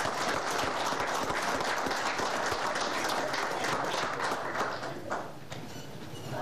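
Audience applauding, the clapping dying away about five seconds in.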